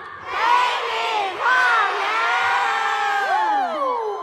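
A large arena crowd of fans, mostly high voices, shouting a cued phrase in unison, likely "陪你跨年" ("spend New Year with you"). It starts a moment in, is drawn out, and trails off with a falling last syllable near the end.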